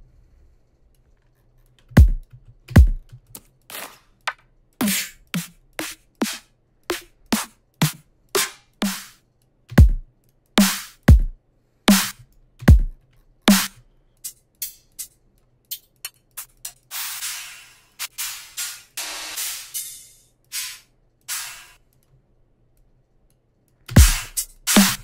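Dubstep drum one-shot samples auditioned one at a time in a DAW: separate kick and snare hits with short gaps between them, starting about two seconds in. About two thirds of the way through comes a noise sweep lasting about three seconds, then a few more short hits before the sound stops.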